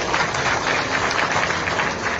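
Large crowd clapping: a dense, steady patter of many hands.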